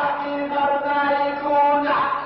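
Lebanese zajal singing: a voice chanting a melodic line in long held notes, moving to a new note about a third of the way in and again near the end.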